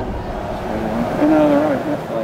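A voice over a steady background rumble, with a short phrase about a second in.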